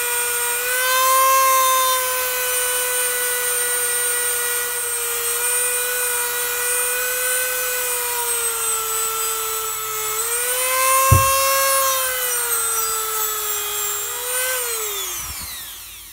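Dremel rotary tool spinning a small abrasive polishing wheel against the rough cast aluminium inside a Harley shovelhead rocker box, smoothing the casting. It makes a steady high whine whose pitch wavers slightly as it works, with one sharp tick partway through. Near the end it is switched off and the whine falls in pitch as it spins down.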